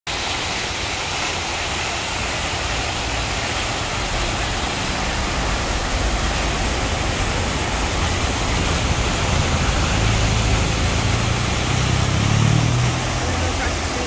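Water from the Fontana dell'Acqua Paola pouring out of its spouts into the stone basin, a steady rush. A low rumble swells about ten seconds in and fades near the end.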